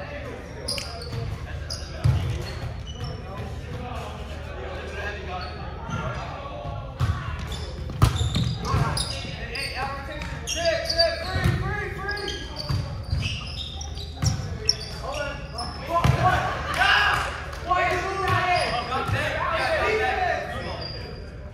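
Volleyball being struck and bouncing on a hardwood gym floor, sharp slaps ringing through a large hall, the loudest about two and eight seconds in, amid players' indistinct calls.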